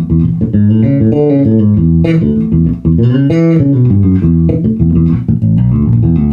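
Gamma J17 Jazz bass with EMG X J pickups played as a melodic line of held notes, with a slide up and back down about three seconds in.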